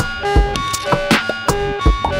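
Electronic jam on small synthesizers over a Pocket Operator PO-33 beat: a kick drum lands twice about a second and a half apart, with ticking hi-hats and short repeating synth notes, some of them sliding in pitch.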